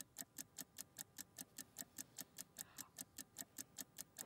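Fast, even ticking of a countdown-clock sound effect, several ticks a second, marking a timed sale running down.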